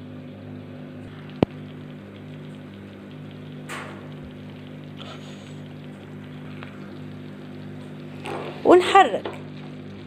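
Milk, butter and flour sauce bubbling in a frying pan as a spoon stirs it, over a steady low hum; a single sharp click about a second and a half in.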